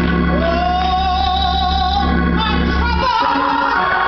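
A woman singing a gospel solo, sliding up into one long held note, then starting a new phrase near the end, over sustained organ chords.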